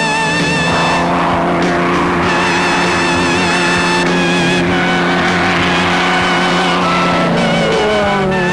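Extra 300 aerobatic monoplane's six-cylinder piston engine and propeller droning steadily in display flight, with background music running underneath.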